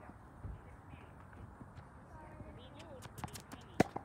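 A tennis racket strikes a ball once, sharply, just before the end, the loudest sound here; a few lighter sharp taps come a moment before it. Faint voices in the background.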